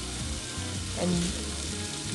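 Chopped onions, curry leaves and spices frying in hot oil in a pressure cooker, a steady sizzle.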